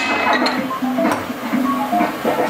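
Electronic air hockey table sounding a short tune of stepped beeping notes, typical of its goal or score signal, over the steady hiss of its air fan. A sharp knock comes right at the start.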